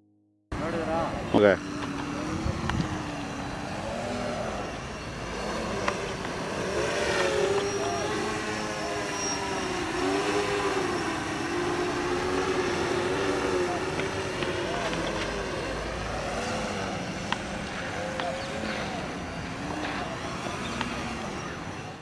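Homemade quadcopter in a toy helicopter body flying, its four small propellers and motors giving a whirring hum whose pitch rises and falls as the throttle changes. A short loud sound about a second and a half in.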